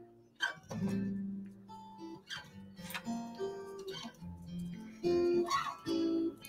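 Background music: a slow melody of plucked guitar notes.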